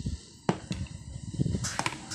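A few light, sharp clicks and knocks from handling: one about half a second in and a quick cluster near the end.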